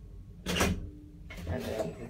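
A sharp mechanical clunk from the elevator about half a second in, followed by a short steady low hum, as the car reaches its floor before the door is opened.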